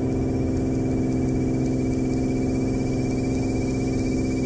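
Cirrus SR22's six-cylinder Continental IO-550 engine and propeller at full takeoff power during the takeoff roll, a steady, even drone made mostly of low tones, with a faint thin high tone over it.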